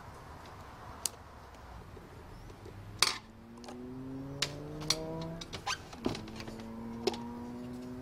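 Electric screwdriver backing screws out of a metal instrument case. Its motor runs twice, starting about three seconds in and again about six seconds in, each time slowly rising in pitch. Light clicks and knocks of metal parts being handled come through.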